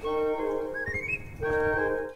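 A short baroque music example: a high woodwind melody plays a quick rising run about a second in, over held accompanying chords. It is an ornamental bridge filling the silence between two phrases.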